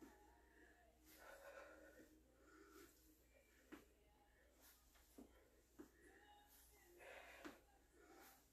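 Near silence: faint breathing of a person exercising, with a few soft taps.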